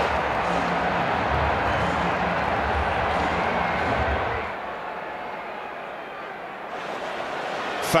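Stadium crowd noise, a broad murmur with a low rumble under it, that drops down and becomes duller about halfway through.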